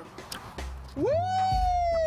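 A woman's long, high "woo!" whoop, held for about a second and a half, its pitch rising quickly and then sliding slowly down.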